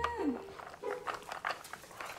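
A dog nosing at a plastic puzzle feeder on a tile floor: scattered small clicks and knocks of hard plastic as it pushes at the toy's lid, after a short falling tone right at the start.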